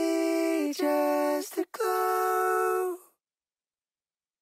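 Dry backing vocals, layered voices holding three sustained sung notes with no reverb. The second note is a little lower. The singing cuts off abruptly about three seconds in with no tail.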